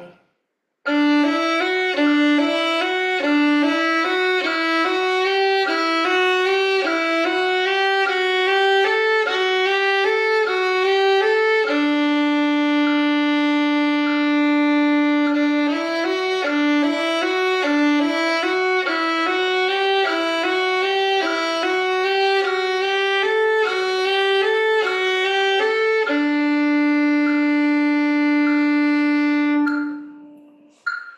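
Violin playing a technical exercise: a quick run of even notes stepping up and down, each phrase ending on one long held low note. The whole phrase is played twice.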